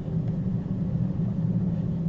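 Steady low hum of the recording's background noise, with no other event standing out.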